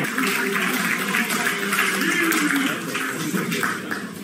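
A room full of people clapping, with voices cheering and calling over the applause.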